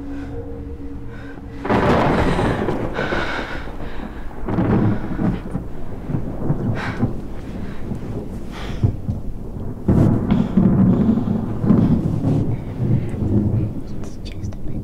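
Thunderstorm: a sudden loud thunderclap about two seconds in and another near ten seconds, with rumbling and rain between them.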